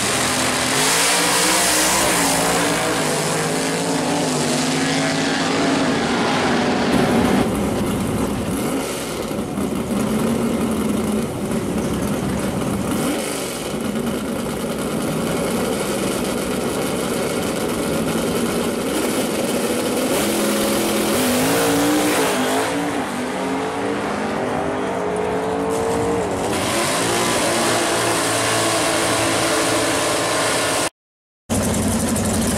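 Drag cars' engines: a pair launches hard and accelerates away at full throttle, then another pair's engines run and rev at the start line. Near the end the rear tyres spin in burnouts with the engines at high revs.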